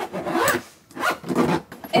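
Zipper of a black hard-shell suitcase being pulled shut in a few strokes.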